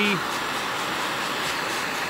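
Cutting torch flame running with a steady hiss, heating a steel sword blade to temper it.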